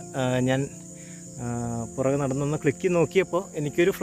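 A man talking, with a steady high-pitched chirring of insects underneath throughout.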